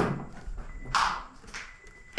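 First-generation Nissan Leaf's open-door warning beeper sounding as a steady high tone, set off by the doors standing open. About a second in, one short, louder sound cuts across it.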